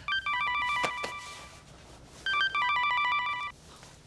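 Mobile phone ringtone for an incoming call: a quick electronic trilling melody that plays twice, each ring lasting about a second and a half with a short pause between.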